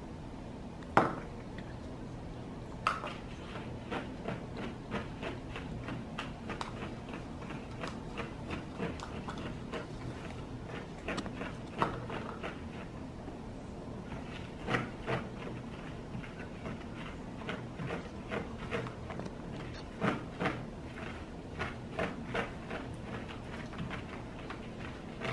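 Plastic forks and spoons tapping and scraping against plastic cups and a bowl while a thick mixture is stirred: irregular clicks throughout, the sharpest about a second in, over a faint steady hum.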